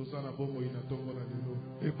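Soft background music of sustained, held chords, with a man's voice starting again near the end.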